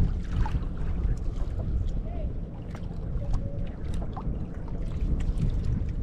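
Wind rumbling on the microphone and water washing lightly against the hull of a small outrigger boat on open sea, with a few faint ticks.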